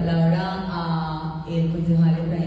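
A person's voice holding a long, steady, level-pitched vowel sound, like a drawn-out hesitation, broken briefly about one and a half seconds in and then held again.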